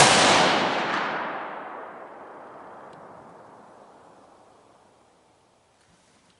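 A single shot from a 6.5 Creedmoor Savage 12 FV bolt-action rifle. Its sharp report rolls away through the surrounding forest in a long echo that fades over about five seconds.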